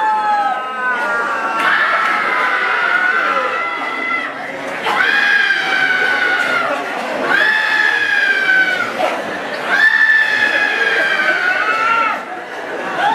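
Human voices screaming in long, high-pitched held cries, several overlapping at first, then three separate shrieks of a second or two each in the second half.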